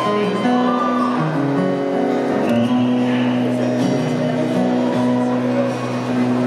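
Solo acoustic guitar playing the opening chords of a song live on stage, before the vocal comes in.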